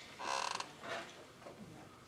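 A short squeaky creak lasting about half a second, then a fainter creak just under a second in.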